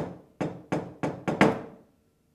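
Six sharp knocks, coming a little faster toward the end and closing with two close together, the last the loudest. They are the rhythmic knocking a wayang kulit puppeteer gives right after a sung mood song.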